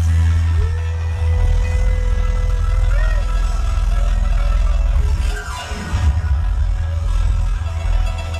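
Live rock band playing an instrumental jam through an outdoor PA, with a heavy, steady bass and a long held lead note that bends up about three seconds in.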